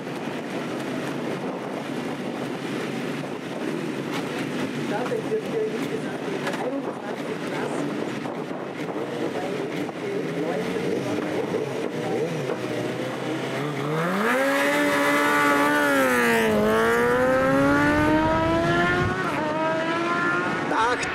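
Murmur of voices for the first two-thirds, then a 1000 cc inline-four superbike engine, the Suzuki GSX-R1000, revs up hard and accelerates, its pitch climbing, dropping once at a gearshift and climbing again.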